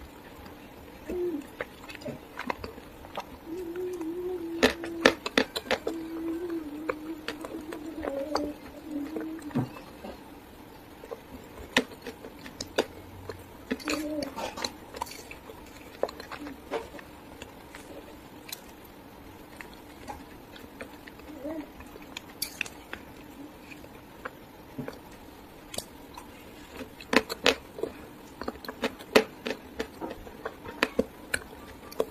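Chalk being bitten and chewed: sharp crunches come in clusters, thickest about four to six seconds in, around fourteen seconds and near the end. A low hum runs under the crunches for a few seconds early on.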